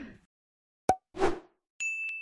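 Edited-in sound effects over dead silence: a short plop about a second in, a brief whoosh just after, then a high steady ding near the end.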